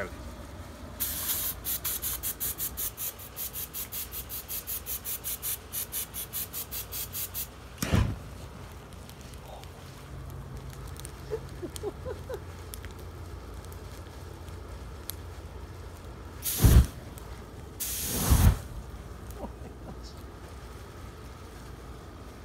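Aerosol can of starting fluid spraying onto a tray of dead moths, a hiss that pulses rapidly, about five times a second, for some six seconds. About eight seconds in a single sudden loud burst, then the starting-fluid fire burning more quietly, with two short loud bursts near the end.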